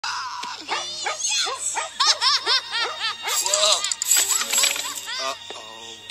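Music with a person's voice laughing over it in quick rising-and-falling peals, and quieter for the last second or so.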